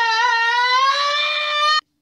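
A man's long, high-pitched held yell ("Aaah"), rising slightly in pitch and cutting off abruptly near the end.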